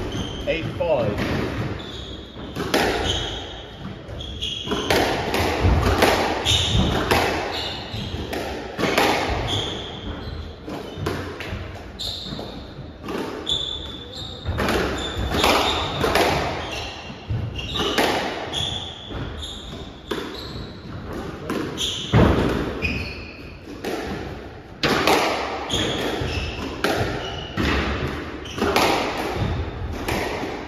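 Squash rally: a squash ball struck by rackets and smacking off the court walls in quick, irregular knocks that echo around the court, with shoes squeaking on the wooden floor.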